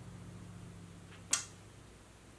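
Quiet room tone with a low, steady hum, broken once by a brief sharp noise a little over a second in.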